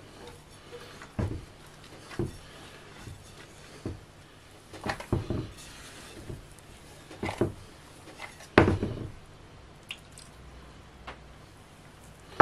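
Gloved hands kneading and squeezing soft cookie dough in a glass mixing bowl: quiet squishing with scattered knocks against the bowl, the loudest about two-thirds of the way through.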